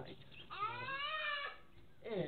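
A single high-pitched, drawn-out vocal cry lasting about a second, rising at the start and dropping away at the end.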